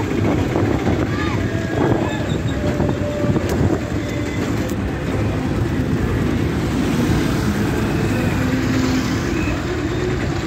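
Motorcycle engine running steadily close by, a continuous low rumble with road and wind noise, and faint voices in the background.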